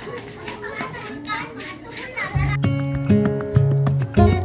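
Children's voices and chatter, then background music with a steady bass line comes in about two and a half seconds in and grows louder than the voices.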